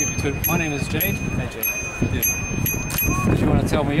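Indistinct voices over low rumbling background noise, with a steady high-pitched tone that stops shortly before the end.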